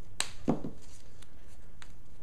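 Hands working a roll of painter's tape on a plywood board: a sharp click, then a short rasp as a length of tape is pulled off, followed by a few faint ticks.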